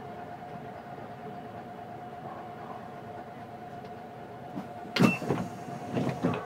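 Steady hum of a city bus idling, heard from inside. About five seconds in come several loud sharp knocks and clatter, with a short high beep.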